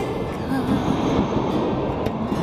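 Passenger train coaches rolling past close by, a steady noise of wheels on rail, with music playing faintly underneath.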